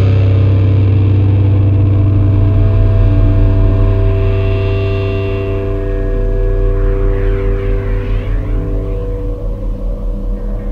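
Stoner-doom rock band's distorted guitar and bass chord held and ringing out over a deep bass drone, with no drums, slowly fading.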